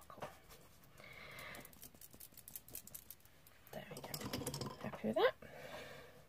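Faint scattered clicks and handling noise, then soft, murmured speech from about the middle on, ending in a short word that rises quickly in pitch.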